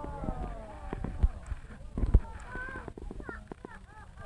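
Voices of people watching the eclipse, indistinct, with a long falling exclamation in the first second and wordless calls near the end. Several sharp knocks from the phone being handled come through, the loudest about a second and two seconds in.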